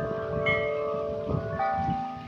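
Wind chimes ringing, several tones struck at different moments and overlapping as they sustain.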